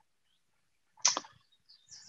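Near silence from a gated microphone, broken about a second in by a brief faint sound and near the end by a soft hiss just before speech resumes.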